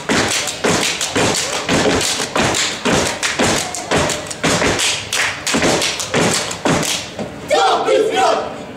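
A step team stepping: rhythmic stomps and hand claps on a stage, about three hits a second, with voices chanting near the end.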